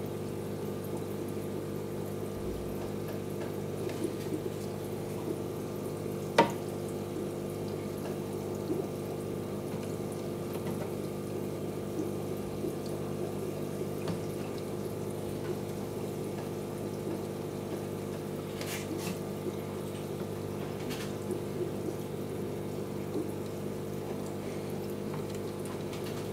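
Aquarium filter pump running with a steady hum and a wash of moving water. One sharp tap sounds about six seconds in, with a couple of fainter ones later.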